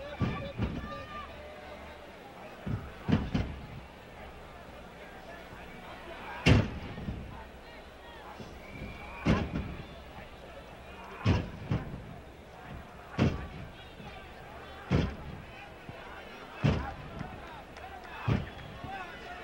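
Sharp, heavy thuds of a pro-wrestling bout: blows landing and bodies hitting the ring canvas. There are a few early on, then a loud one about every two seconds through the second half, over a low arena murmur.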